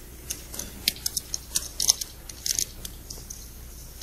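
Clay poker chips clicking against each other as a player fingers his chip stack: a run of light, irregular clicks over a low room hum.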